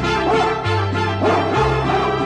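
Mariachi band playing an instrumental break in a ranchera corrido, with a dog's barks mixed into the recording twice, about a second apart.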